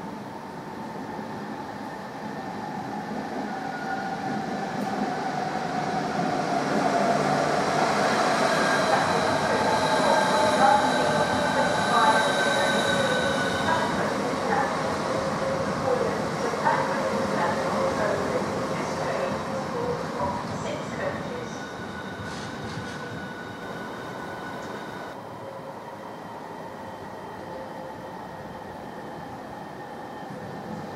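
High-speed electric train running through an underground station, its sound building up, then fading away over several seconds. A motor whine slides slowly down in pitch under the wheel-on-rail noise.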